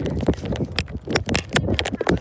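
Quick, irregular taps and knocks of footsteps and of a handheld phone jostling as its holder runs, several a second.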